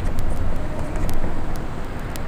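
A steady low rumble of background noise with a few light clicks, the chalk tapping on the blackboard as a sum is written.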